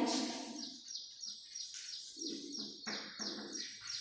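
A bird chirping over and over: a quick run of short falling chirps, about four a second. Under it are a few short scrapes of chalk writing on a chalkboard.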